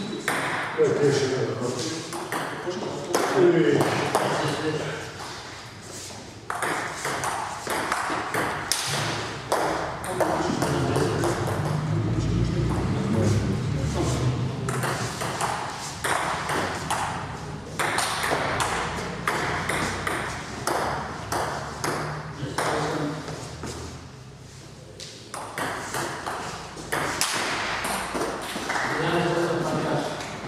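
Table tennis ball clicking back and forth off the bats and the table in rallies, with voices alongside.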